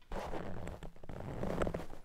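Close-up handling noise at a studio microphone: hands and a wristwatch rustling and scraping against or near the mic, with a few small clicks in a scratchy, irregular texture.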